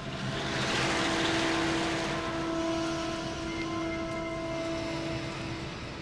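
Armored military vehicle's engine running: a rushing noise that swells about a second in and slowly fades, with a steady hum under it.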